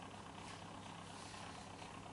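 Faint steady low hum with light hiss: room tone, with no distinct handling sounds.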